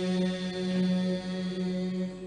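A group of men chanting a Mouride qasida in unison, holding one long low note on the end of a line. The upper tones thin out in the second half as the note fades.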